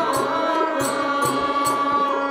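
Live accompaniment music for a Telugu verse drama: a voice singing on long held notes over steady sustained instrumental tones, with a hand drum struck about three times a second.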